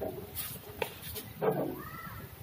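A short animal call about one and a half seconds in, rising and falling in pitch, among scattered clicks and rustling.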